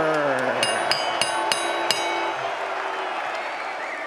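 A man's long drawn-out announcing call, falling in pitch and dying away in the first second, over the steady noise of a large arena crowd. It is followed by a handful of sharp, bright ringing clinks over about a second and a half.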